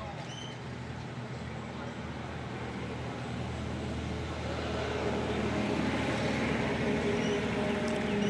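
A motor vehicle's engine running as a low, steady hum that grows gradually louder over the seconds, as a vehicle comes closer.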